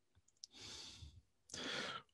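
A man breathing close to the microphone between sentences: a small mouth click, then a faint breath about half a second in and a louder one near the end.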